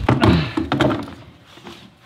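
A heavy thud at the very start, most likely a person landing on a hardwood floor, with a second knock just after. It dies away within about a second.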